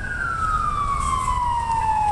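Emergency vehicle siren wailing, one long tone sliding steadily down in pitch, over a low rumble of passing vehicles.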